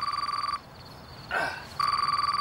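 Phone ringing with an electronic warbling ring, two rings about a second long each, with a short vocal sound between them.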